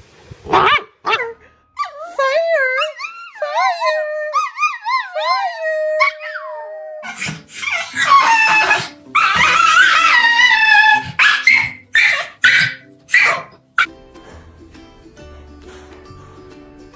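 Dogs vocalising: high, wavering whining cries for a few seconds, then loud howling and barking with several short barks. Soft background music takes over near the end.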